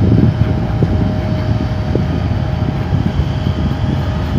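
Steady low outdoor rumble with a faint steady hum that stops near the end.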